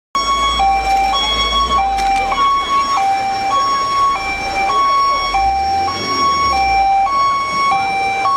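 Fire engine's two-tone siren, switching back and forth between a high and a low note about once a second, over a low rumble.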